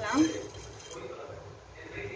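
Mustard seeds dropping into oil in a nonstick pan, a faint, even patter and light sizzle after a short spoken word.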